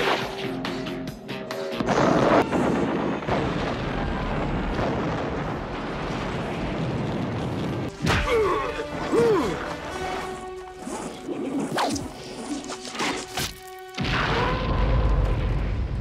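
Action-film soundtrack clips: explosions booming and crashing over music, with a big blast about two seconds in, sharp hits around the middle, and a long heavy rumble near the end.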